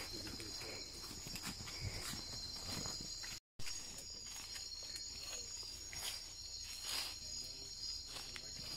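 A steady high buzzing chorus of night insects in tropical rainforest, several pitches held together, with footsteps in boots brushing and crunching through leaf litter and undergrowth. The sound drops out completely for a split second about three and a half seconds in.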